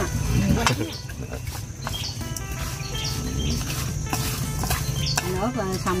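Wooden chopsticks stirring raw frog pieces with turmeric and seasoning in a stainless steel bowl, with a few sharp clicks of the chopsticks against the metal.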